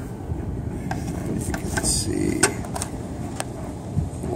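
Steady low rush of air moving through furnace ductwork, with several light clicks and knocks from handling at the humidifier opening.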